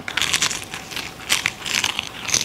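Crisp roasted seaweed snack sheet crunching as it is bitten and chewed: a quick, irregular run of crackles.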